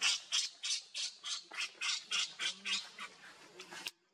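Baby macaque screaming in a rapid run of short, shrill cries, about three or four a second, that stops abruptly near the end.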